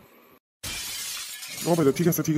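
A glass-shattering sound effect that starts suddenly about half a second in, right after a brief dead silence, and lasts about a second.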